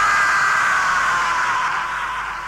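Electric guitar feedback at the tail end of a goregrind track: a lone high whine, slowly sliding down in pitch and fading, with the drums and bass silent.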